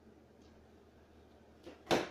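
Quiet room tone with a faint click about half a second in, then a small tick and one sharp, loud snap near the end.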